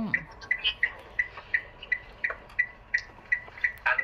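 A steady, clock-like ticking, about three light ticks a second.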